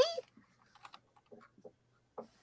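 Typing on a computer keyboard: a handful of light, irregular keystrokes.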